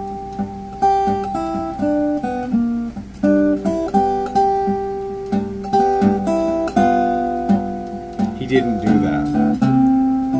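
Archtop guitar in standard tuning, fingerpicked with a thumbpick and fingerpicks: blues in the key of G. Melody notes are picked one after another over a low note that keeps ringing underneath.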